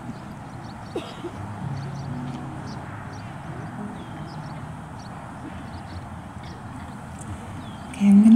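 Acoustic guitar picked quietly, a few soft low notes from about one to four seconds in, over a steady outdoor background with scattered short high chirps.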